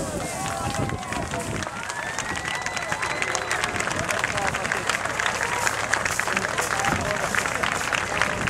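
Crowd at the water's edge: many voices calling out, with one long high call that rises and holds a second and a half in. A quick patter of sharp clicks runs through the second half.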